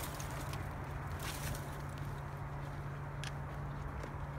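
A few faint footsteps and rustles of brush on dry ground while walking, over a steady low hum.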